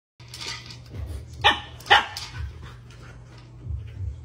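Puppy giving two short, sharp barks close together, about a second and a half in, with softer noises from the puppy before and after.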